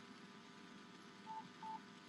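Faint background hiss, then two short identical electronic beeps in quick succession, a little over a second in.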